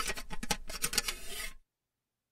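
A quick run of small, irregular scratching and rubbing clicks that cuts off suddenly about one and a half seconds in.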